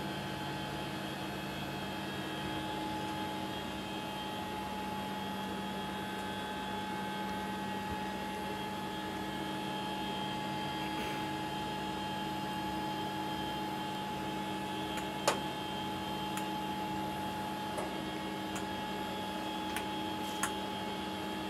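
Steady hum of space station cabin ventilation and equipment, with several constant tones. One sharp click comes about fifteen seconds in, and a few faint ticks near the end.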